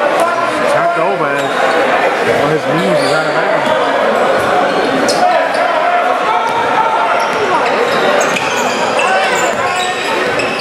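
A basketball dribbled on a hardwood gym floor during play, under a steady mix of players' and spectators' voices echoing in a large gym.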